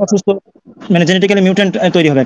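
Men's voices in an online call: a short burst of speech, a brief pause, then a second voice, thinner as if over the line, holding a drawn-out, hum-like sound.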